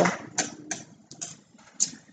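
Scissors snipping through layers of tulle wound around a cardboard strip: several short, sharp snips at an uneven pace.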